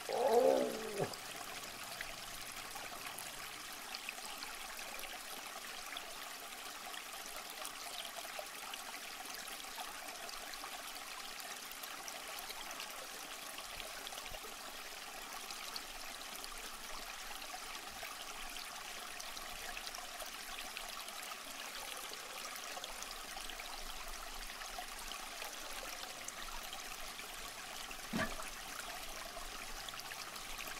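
A splash at the aquarium's surface in the first second as the wolf fish strikes, then aquarium water trickling steadily, with one short plop near the end.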